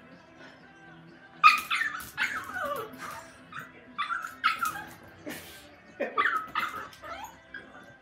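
A small dog giving high-pitched yips and whines in several bursts, starting about a second and a half in, each cry sliding down in pitch, over quiet background music.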